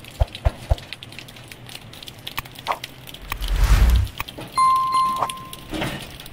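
Rain with a few sharp taps, then a loud low rumble of wind on the microphone midway, followed by a steady high tone lasting about a second.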